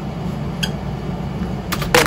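A steady low hum with a faint click about half a second in and a few sharper clicks just before the end.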